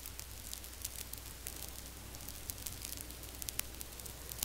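Faint crackling static: a steady hiss dotted with irregular clicks, over a constant low electrical hum.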